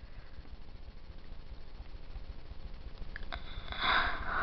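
Quiet room tone with a low rumble from a hand-held camera, then a breath drawn in near the end.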